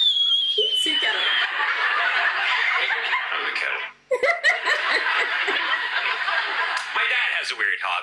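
A theatre audience laughing at a stand-up one-liner, with a woman's own laughter close to the microphone and a high falling tone fading out in the first second. The sound cuts out briefly about halfway, then the crowd laughter returns, and a man's voice starts the next joke near the end.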